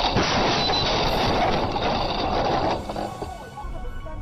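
A car crash heard through a dashcam: a loud, harsh rush of noise from the impact and scraping, lasting nearly three seconds before it drops off suddenly.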